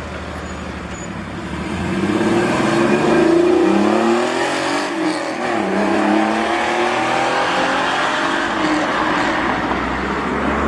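Air-cooled Porsche 911 flat-six accelerating away, its revs rising, dipping at a gear change about halfway, then climbing again as it pulls off down the road.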